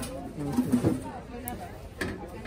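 Background chatter of people talking, louder for a moment about half a second to a second in.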